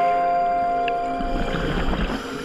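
Background music of held, sustained notes. Near the end a low, bubbling rumble rises under it: scuba exhaust bubbles from a diver's regulator.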